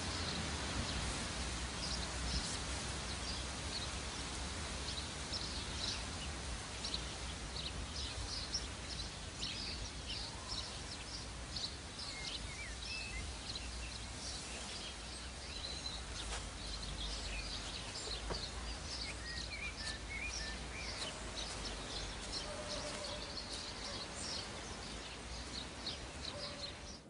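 Birds chirping outdoors, many short high calls scattered throughout, over a steady low rumble and hiss.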